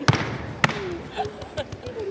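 Two sharp percussive hits from a step routine, a stomp or clap landing just after the start and another about half a second later, in a large echoing gym.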